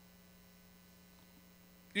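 Faint, steady electrical mains hum, a single low tone with no other sound until speech starts at the very end.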